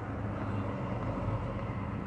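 A city transit bus's engine running with a steady low hum as the bus slowly approaches.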